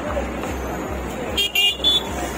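Diesel generator set running with a low, steady pulsing throb, about three to four pulses a second. Two short high-pitched beeps come near the end.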